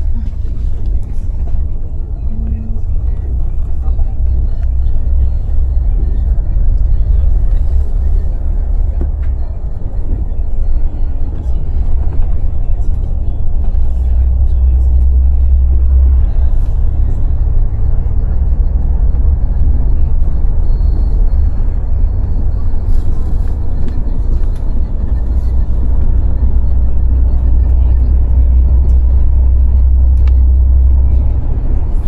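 Steady low rumble of a coach bus cruising at highway speed, heard from inside the cabin.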